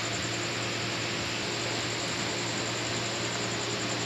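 Steady background hiss with a constant low hum and a faint high whine, unchanging throughout, with no distinct knocks or clatter.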